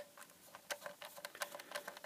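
Light, faint clicks and scrapes of a small metal screwdriver tip probing the deep screw hole of a plastic plug-in adapter casing, failing to reach the screw, with one sharper click right at the start.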